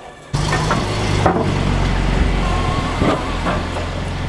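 Engine of a custom Suzuki TL1000R motorcycle, stroked to 1300 cc, idling steadily after starting suddenly about a third of a second in. Two brief sharp sounds come through the idle, about a second and three seconds in.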